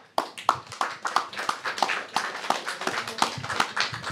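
Scattered hand clapping from a small audience in a small room: a dense, irregular patter of claps.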